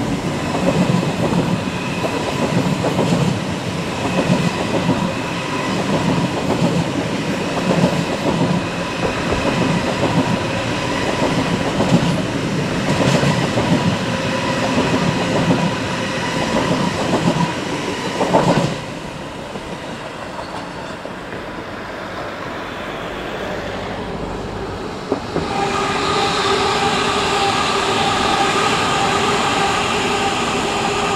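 An ICE high-speed train running past below, a steady dense rumble of wheels on rails with a faint steady tone in it, dropping away suddenly about two-thirds of the way through. Near the end an S-Bahn electric multiple unit comes in, its traction motors whining in several steady tones over the wheel noise.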